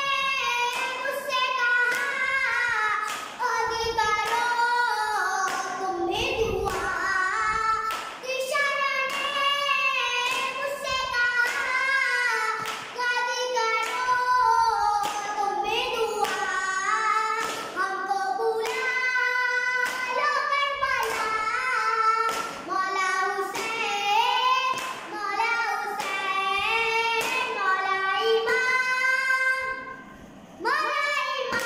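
A boy singing a noha, a Shia lament for Muharram, solo and unaccompanied, in long phrases with short breath breaks every few seconds. The phrases are marked by regular thumps about once a second, a hand beating the chest (matam).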